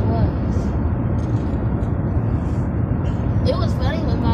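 Steady low road and engine rumble inside a moving car's cabin, with brief snatches of voices right at the start and near the end.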